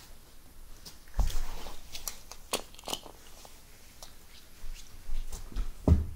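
Scattered clicks, knocks and low thumps as small toy monster trucks are handled and set down on carpet close to the microphone. The loudest thump comes just before the end.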